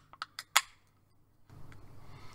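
About five quick, sharp clicks within the first half second or so from fingers working at the top of an aluminium beer can, then quiet.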